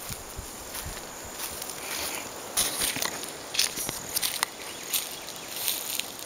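Footsteps through dry fallen leaves: an uneven series of rustles and crackles as someone walks.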